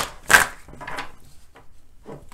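A tarot deck being shuffled by hand: one short, loud swish of cards sliding together a moment in, then a few faint clicks and rustles of cards.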